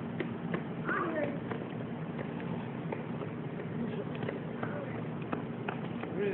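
Faint, indistinct voices over a steady low hum, with irregular clicks and taps scattered through.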